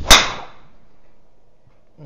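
Golf driver striking a teed ball: a single sharp crack about a tenth of a second in, ringing off within half a second.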